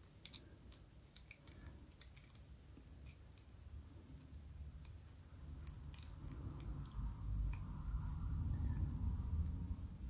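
Faint small clicks from a small Master Lock combination padlock as its dial is turned back and forth and the shackle is tugged, testing the dial's gates for the last number of the combination. Low handling noise grows louder in the second half.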